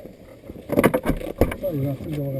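A few sharp knocks and clicks with rustling, bunched together about halfway through: an aviation headset being handled as it is switched off and taken off. A voice follows near the end.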